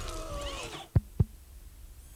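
Sound effects from an animated film trailer: a wavering, falling tone that fades out, then two sharp clicks about a quarter of a second apart.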